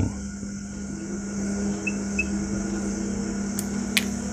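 Steady electrical hum with a constant low tone and a high hiss, and a couple of faint clicks near the end.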